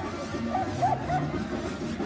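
A dog giving short, quick yips, three in a row in the middle, over steady music.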